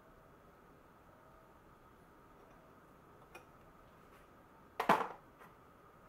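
Metal lantern parts (the sheet-steel ventilator and frame ring) being handled: a faint click past halfway, then one sharp metallic clank with a short ring about five seconds in, over quiet room tone.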